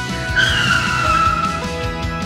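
Cartoon tire-screech sound effect: one squeal lasting about a second, starting about half a second in and falling slightly in pitch, over children's background music with a steady beat.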